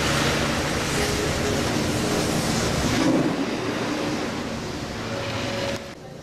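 Chairlift running: a steady mechanical rumble and hiss with a few faint steady tones, which drops sharply in level just before the end.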